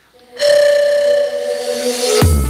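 Andean bamboo panpipes blown in one long breathy held note, starting about half a second in and stepping down to a lower note near the end.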